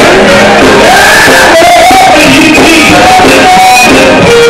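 Live gospel group singing with a band of electric guitar and tambourine, loud and unbroken, the voices sliding between held notes.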